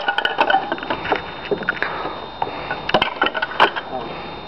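Wooden chair breaking apart under a blow, then broken wooden chair parts knocking and clattering against each other as they fall and are moved about. A quick run of sharp cracks and knocks, several in the first second and more around three seconds in.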